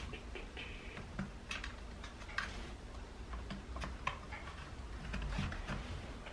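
Faint, irregular clicks and ticks of a flat metal pry tool working along the seam between a laptop's plastic palm rest and bottom case, prying the case apart.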